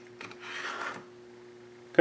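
A small click, then about a second of soft scraping: the dimmer's circuit board rubbing against its plastic housing as it is worked free. A faint steady hum runs underneath.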